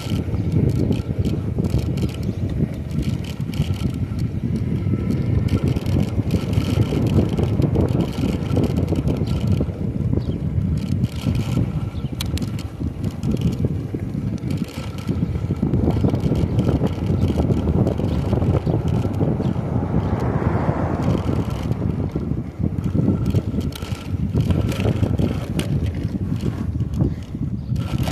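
Wind buffeting the microphone on a moving electric bike at about 13–14 mph, a steady low rumble with scattered light clicks and rattles.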